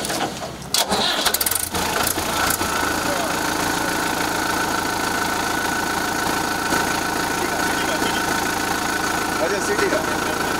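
Tractor's diesel engine starting, catching about a second in, then running at a steady idle.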